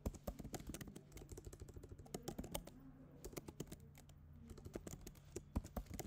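Typing on a computer keyboard: faint, quick, irregular key clicks in short runs with brief pauses.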